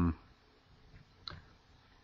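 Two faint short clicks in a quiet pause, the second, a little louder, about a second and a quarter in, just after the end of a drawn-out "um".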